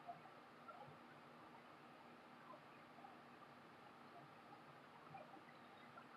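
Near silence: room tone with a faint steady hiss and a few tiny ticks.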